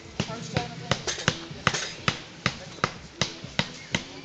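Trials bicycle hopping again and again on its back wheel on a boulder, each landing a sharp thump, about three a second.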